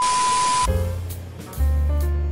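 A TV-static glitch transition effect: a burst of hiss with a steady high beep that cuts off after about two-thirds of a second. Background music with deep bass notes follows.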